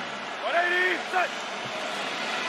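A man's shouted call at the line of scrimmage: one held call about half a second in, then a short second shout, over steady stadium crowd noise. It fits a pre-snap cadence call just before the ball is snapped.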